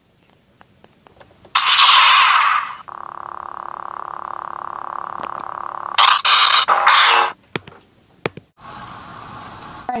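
Lightsaber sound effect: a loud rushing ignition about a second and a half in, then a steady hum, then a run of choppy swing sounds around six to seven seconds, a few clicks, and a quieter hiss near the end.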